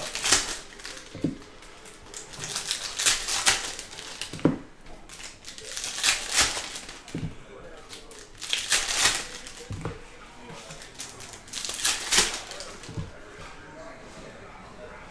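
Foil trading-card pack wrappers for 2022 Capstone Baseball being crinkled and torn open in short bursts every few seconds, with soft knocks of packs and cards set down on the table in between.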